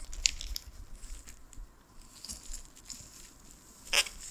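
Plastic bubble wrap crinkling and crackling under the hands as a wrapped paperback is handled. The crackles are short and irregular, with a louder sharp crack at the very end.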